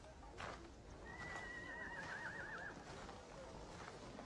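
Horse whinnying faintly in the distance: one high call starting about a second in, held and then quavering at its end, with a faint knock shortly before.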